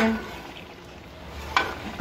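Metal ladle stirring curry in an aluminium pot, knocking against the pot sharply once at the start and again more softly about one and a half seconds in, over a faint low steady background noise.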